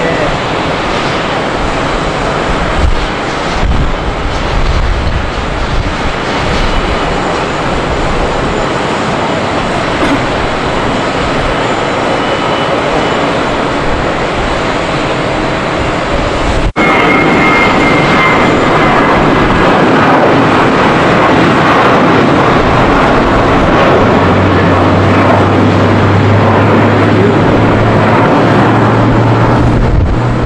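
Jet aircraft engine noise at an airport apron, a steady roar. It jumps louder at an abrupt cut about 17 seconds in, and a low steady hum joins around 24 seconds.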